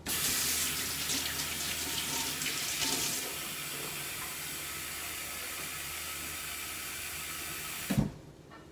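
Kitchen tap running water into a blender cup packed with chopped greens. It comes on suddenly, splashes louder for about the first three seconds, then settles to a steady stream and is shut off at the end.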